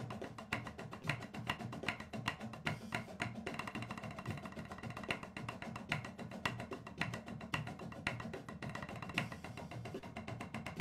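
A drum corps snare line playing a flam warm-up exercise in unison on Yamaha marching snare drums: rapid, crisp stick strokes in a steady groove with regular accents, heard through a screen-shared video.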